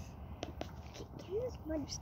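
Quiet, faint voice sounds from people near the microphone, with a couple of small clicks early on, over low background noise.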